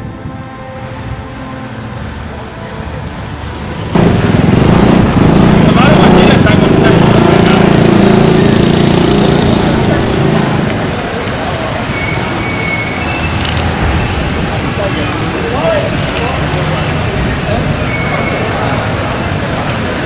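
Street noise of vehicles running slowly past close by, with a crowd of people talking. It turns suddenly louder about four seconds in, with a strong low engine-like drone for several seconds, and a few short high whistle-like tones come in the middle.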